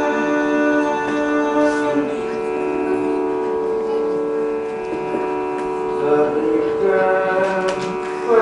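A steady pitch drone from a shruti box, set to the singer's key ahead of the song. About six seconds in, a voice starts humming along on the drone's pitch.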